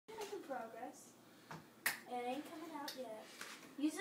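Quiet talking voices in a small room, with a sharp tap a little before two seconds in and a couple of fainter taps later.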